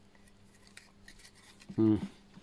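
Faint light clicks and rubbing while the opened TV panel is handled, then near the end a brief, loud voiced sound from a person.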